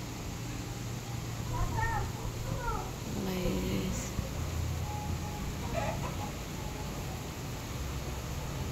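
A cat meowing a few times in short calls that rise and fall in pitch, over a steady low hum.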